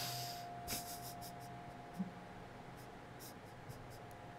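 A short breathy rush at the start, then faint, irregular light clicks and scratches in two clusters, over a steady faint high hum.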